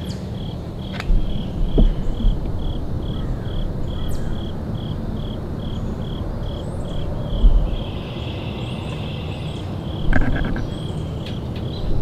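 An insect chirping in a steady, even rhythm of about three high chirps a second, over a low rumble. Dull thumps and clicks from the handheld camera and bow being moved come about a second in, just past the middle, and near the end.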